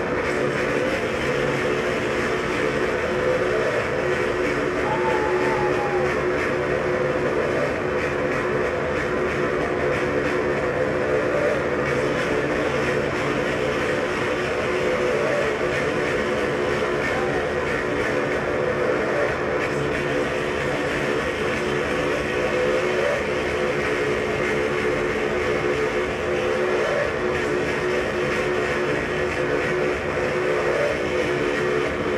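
Live death-industrial noise music: a dense, steady wall of distorted noise drone with sustained low tones held throughout.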